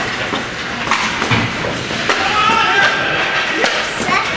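Ice hockey play echoing in an arena: sticks and puck knocking on the ice and boards. A high-pitched voice shouts, held for about a second in the middle.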